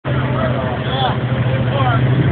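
Off-road rig's engine running with a steady low drone, with people talking over it.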